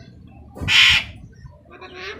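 An Alexandrine parrot gives one loud, harsh squawk about half a second in, followed by a shorter, fainter call near the end.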